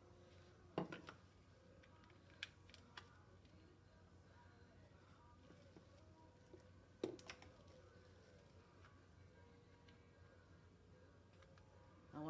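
Near silence with a few sharp clicks and knocks from small decorations being handled on a countertop. The loudest comes about a second in and another about seven seconds in.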